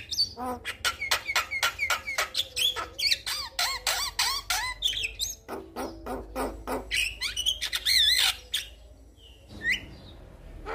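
A male Javan myna singing: a fast, dense string of short notes and sharp clicks, several a second, many of them quick rising-and-falling whistles. The song stops about eight and a half seconds in, with one more call just before the end.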